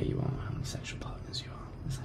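A man whispering quietly, breathy hissing syllables without full voice.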